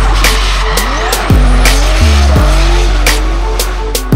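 Electronic music with heavy, regularly dropping bass beats over a drift car's engine revving and its tyres squealing as it slides.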